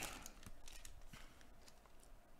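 Faint rustling of a torn foil trading-card pack and its cards, handled by gloved hands, with a few soft clicks as the cards slide apart.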